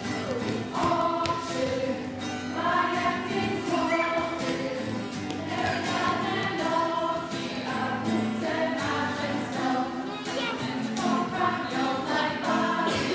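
A group of adults and children singing a children's song together, with a strummed acoustic guitar keeping a steady beat.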